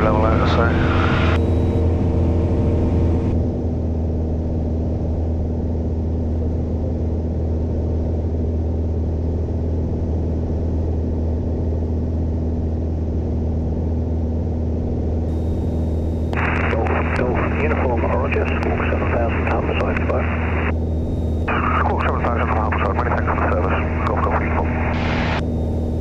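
Piper Warrior II's four-cylinder Lycoming engine droning steadily at cruise power, heard inside the cockpit.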